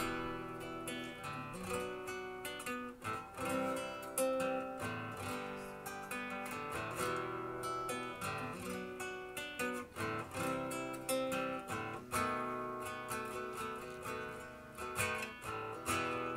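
Solo acoustic guitar playing a song's instrumental introduction, picked notes mixed with strummed chords.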